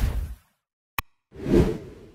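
Whoosh sound effects of an animated YouTube subscribe-button graphic: one whoosh fading out, a sharp click about a second in, then a second whoosh swelling and fading.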